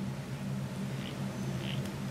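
Faint, soft sucking and gurgling as a Montblanc Meisterstück 149 fountain pen's piston filler draws ink up through the nib while the piston knob is turned, heard as a few small separate sounds over a steady low hum.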